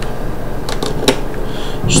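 A few light clicks as cable plugs are handled and connected at the plastic subwoofer box of a small 2.1 computer speaker set, over a steady low hum.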